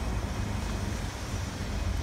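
Steady low rumble of outdoor vehicle noise around a petrol station.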